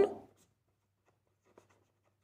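A pen writing on paper, faint, in short strokes.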